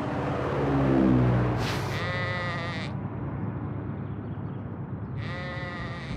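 A sheep bleating twice, about two seconds in and again near the end, each a wavering call lasting about a second, over a low rumble that is loudest about a second in.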